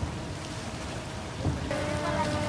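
The rumble of daytime firework salutes fired over the sea dies away in a noisy haze, with another dull boom about one and a half seconds in. Near the end a steady horn-like tone starts.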